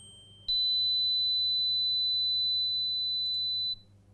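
A steady 4 kHz sine test tone, starting with a click about half a second in and cutting off shortly before the end.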